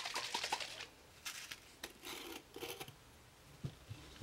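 Plastic bottle of copper patina solution being shaken, with quick clicks and rattles, then its cap twisted off with a few short, faint scratchy scrapes.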